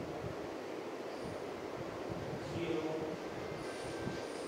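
Steady rumbling background noise, with faint indistinct voices.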